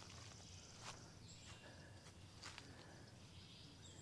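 Near silence: faint outdoor ambience with a couple of soft footsteps on dry leaf litter, about a second in and again past halfway.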